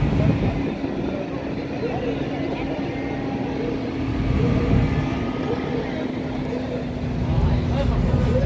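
Power soft-top mechanism of a Rolls-Royce Phantom Drophead Coupé running with a steady hum as the roof folds away under the rear deck; the hum stops shortly before the end. Crowd chatter throughout.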